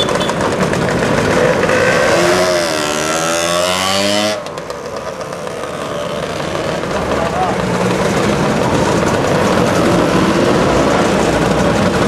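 Motor scooter engines running as a line of scooters pulls away and rides past, one engine note rising and falling before the sound drops suddenly about four seconds in, with crowd chatter underneath.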